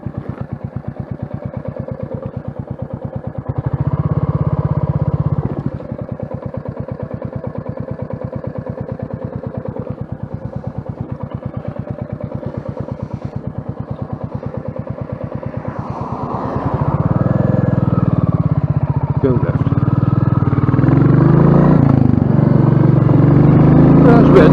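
Royal Enfield single-cylinder motorcycle engine running at low revs with an even beat. It swells briefly about four seconds in, then gets louder from about two-thirds of the way through as the bike picks up speed.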